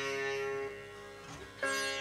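Sitar playing slow opening phrases of a ragamalika in raga Khamaj: a plucked note rings on with many overtones, the note changes about two-thirds of a second in, and a fresh sharp stroke comes near the end, over a tanpura drone.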